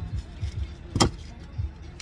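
Low, uneven thumping rumble inside a car, with one sharp click about a second in.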